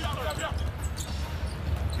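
Basketball being dribbled on a hardwood court, with a few short bounces heard over the steady rumble and murmur of an arena crowd.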